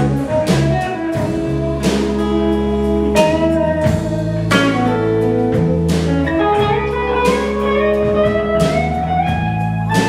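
Live full-band instrumental passage: drum kit keeping a steady beat under strummed acoustic guitar and bass, with a guitar melody whose notes slide and bend upward near the end. There are no vocals.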